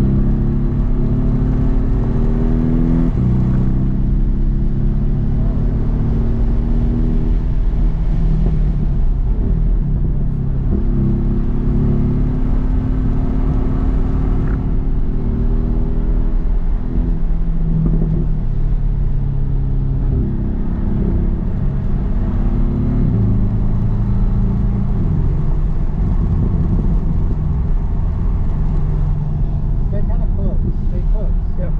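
Porsche 718 GTS engine heard from inside the cabin while driven hard on track. Its pitch climbs under acceleration and drops sharply at each gear change, several times over.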